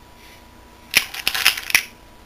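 A hand rummaging in a cut-glass bowl of small base-ten unit cubes: a quick run of light clicks and clinks against the glass, lasting under a second, about halfway through.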